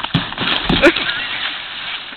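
Snow boots thumping and scraping on a plastic playground slide as a person runs up it, slips and slides back down, with two sharp knocks in the first second. A brief cry from a person comes with the knocks.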